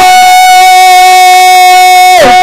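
Yakshagana bhagavata singing one long, steady held note over the ensemble's drone, cutting off right at the end.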